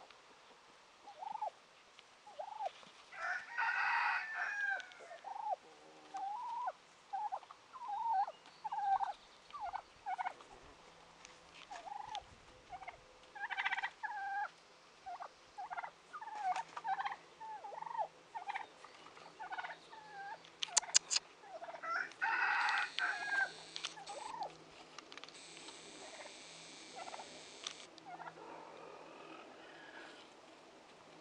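Farmyard poultry calling: a run of short clucking calls throughout, with two louder, longer calls, one near the start and one about two-thirds of the way through, of the gobbling or crowing kind.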